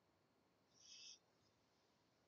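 Near silence: quiet room tone, with one faint, brief high-pitched sound about a second in.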